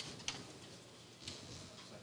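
Quiet room noise with three small sharp clicks, the loudest a quarter second in and a fainter one just past the middle.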